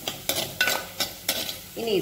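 Chopped pieces sizzling in hot oil in a pan while a spoon stirs them, with about four sharp scraping strokes of the spoon against the pan.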